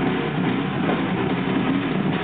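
Heavy metal band playing live: a steady, dense wall of distorted guitar, bass and drums, with no singing at this moment.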